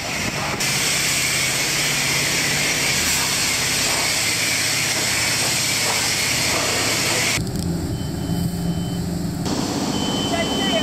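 Self-service car-wash pressure wand hissing as it sprays water onto a car, stopping suddenly about seven seconds in. A steady low hum and a thin high tone remain afterwards.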